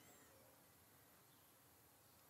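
Near silence: faint room tone in a pause of speech.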